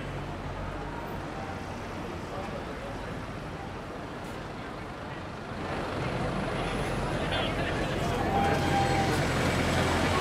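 City street traffic with a double-decker bus passing close, its engine growing louder from about halfway through, over the voices of passers-by.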